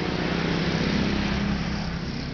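A motor vehicle passing on the road, its engine hum swelling to a peak about a second in and then easing off.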